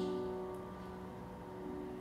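A grand piano chord held and slowly fading between sung phrases.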